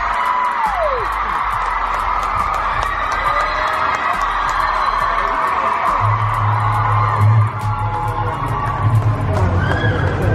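A large hall crowd cheering and screaming, full of shrill whoops and shrieks. Music with a heavy bass comes in about six seconds in.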